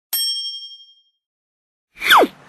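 A single bright, bell-like ding that rings out and fades over about a second.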